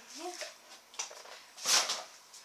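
A short, loud rustle of handled packaging near the end, after a faint click about a second in.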